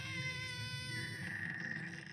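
An animated character's long, drawn-out anguished cry of "Pillow!", held on one pitch, its tone thinning about halfway through.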